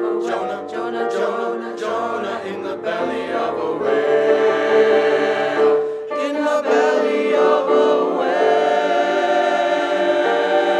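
Mixed choir of young men and women singing in harmony, moving note to note at first, then holding long sustained chords from about four seconds in.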